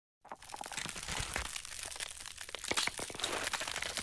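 A dense, continuous run of crinkling and crackling, with sharper cracks scattered through it.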